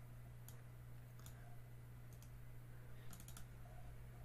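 Faint computer mouse clicks: single clicks spaced about a second apart, then a quick run of several clicks near the end, over a steady low electrical hum.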